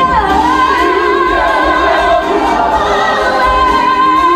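A woman belting a long-held high note in musical-theatre style, with light vibrato, over ensemble and orchestral accompaniment; she slides into the note just after the start and sustains it.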